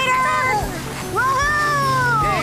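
High-pitched, wordless excited cries from cartoon characters riding power sleds, ending in one long rising-and-falling call.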